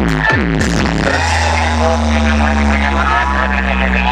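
Loud electronic dance music from a DJ truck's speaker stack: rhythmic falling bass sweeps give way, about a second in, to a long, deep held bass note under higher synth tones.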